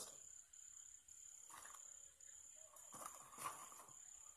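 Near silence: a faint, steady high-pitched trill in the background, with a couple of faint soft rustles.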